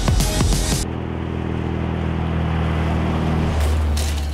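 Electronic music cut off with glitchy stutters about a second in, giving way to a steady vehicle engine hum and road noise that swells lower near the end and then begins to fade.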